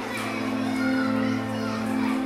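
Many schoolchildren's voices chattering and calling at once, over sustained background music.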